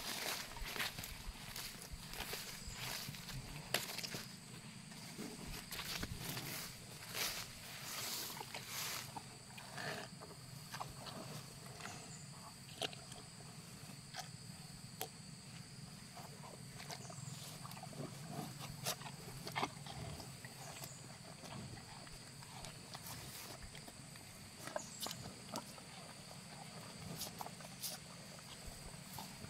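Cattle eating feed from a plastic bucket close by, with scattered clicks and rustles of muzzles in the feed and grass. Footsteps through undergrowth come first, in the opening seconds. A steady high insect drone runs underneath.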